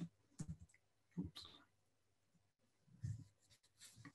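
Near silence with a few faint, short clicks and knocks spread through it, in small-room tone.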